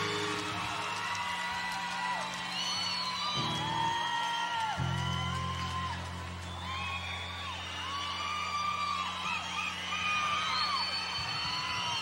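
Concert crowd cheering with many high whoops and screams, over low held instrument tones that shift pitch twice.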